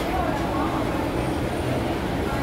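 Steady background din of a busy open-air place: a low, even rumble like traffic, with faint voices talking.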